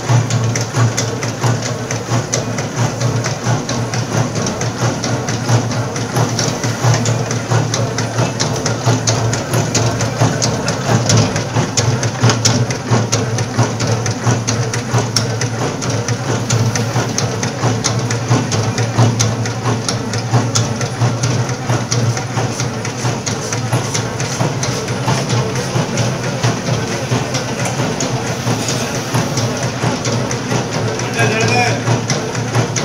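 Batasa (sugar-drop) making machine running: a dense, fast clatter from its mechanism over a steady low hum.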